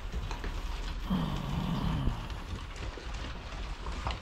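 Pit bull puppies eating dry kibble off a wooden floor: scattered crunching and claws clicking on the boards. A short low vocal sound comes about a second in.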